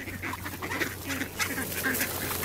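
A crowd of mallard ducks being hand-fed, quacking in many short, overlapping calls.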